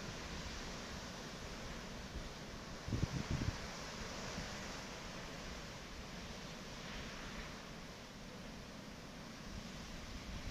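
Steady outdoor wind noise, with a short gust buffeting the microphone about three seconds in.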